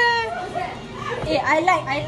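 Excited, high-pitched voices of a group of young people: a loud, drawn-out cry at the very start, then a jumble of short exclamations in the second half.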